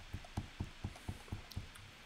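A quick run of about eight soft clicks at a computer, roughly four to five a second and slightly uneven.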